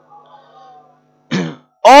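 A man briefly clears his throat once into the microphone about a second and a half in, just before he starts speaking again.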